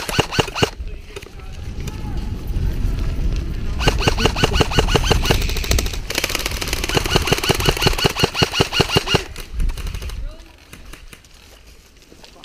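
Airsoft electric rifles firing full-auto: a short burst right at the start, then long rapid bursts from about four to nine seconds in, over a low rumble. The firing stops about ten seconds in and the sound drops to quieter field noise.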